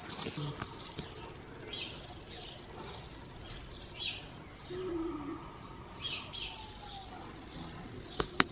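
Faint chirps of small birds, short high calls coming every second or two.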